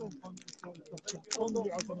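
Indistinct voices of people talking nearby, mixed with many short clicks and rustles close to the microphone.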